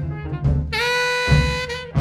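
Tenor saxophone playing a jazz instrumental line over a bass: a few short notes, then one long held note that slides up into pitch about two-thirds of a second in.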